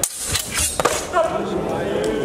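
Steel longswords clashing in a fencing bout: a quick run of about four sharp knocks and clanks within the first second. Voices echo in the hall after it.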